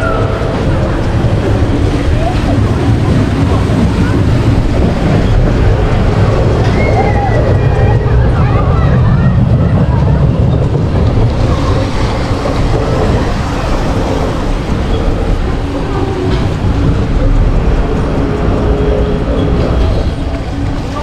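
Steady low rumble of the tower ride running with the rider aboard, with faint voices in the background.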